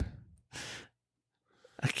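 A person's single short breath, about half a second in, a soft hiss without pitch between two remarks.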